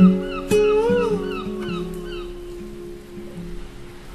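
Instrumental intro of a soft acoustic pop song: guitar notes struck near the start and again half a second in, with a short note bending up and back about a second in, then the notes ring out and fade.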